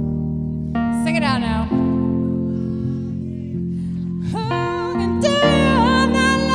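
Live band playing a slow soul number: sustained keyboard and guitar chords under a woman singing long, wavering notes, one about a second in and another near the end.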